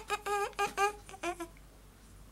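A young woman's voice making short, wordless high-pitched sounds, half-hummed, for about the first second and a half, then only faint room tone.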